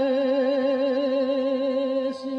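A woman's solo voice singing Bulgarian folk song, holding one long note with an even vibrato.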